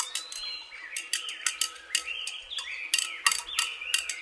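A stirring rod clicking rapidly and irregularly against the side of a glass beaker as water is stirred vigorously, with birds chirping throughout.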